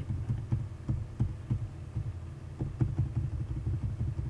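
A man coughs once at the start, followed by a low throbbing, about three uneven thumps a second, over a steady low hum.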